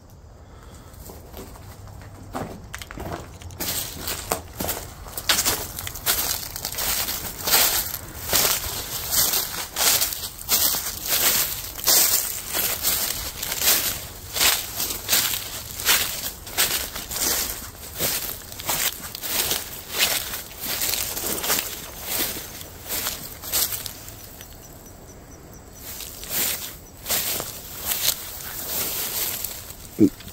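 Footsteps through tall dry grass and weeds at a steady walking pace. They start a few seconds in and pause briefly near the end.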